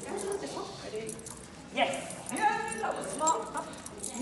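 A dog barking and yipping a few times in the second half, excited during tug play with a leash toy.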